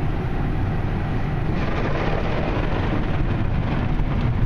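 Ryko Softgloss XS automatic car wash heard from inside a pickup's closed cab: water spray and a cloth wash brush working over the truck, a steady noise with a deep rumble.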